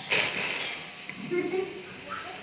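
A brief rustle of the handheld microphone being passed from hand to hand, then faint voices from the group.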